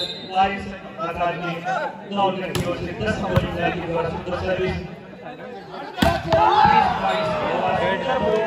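Volleyball rally: shouting players and spectators with several sharp ball strikes, the loudest about six seconds in, followed by louder shouting from the crowd.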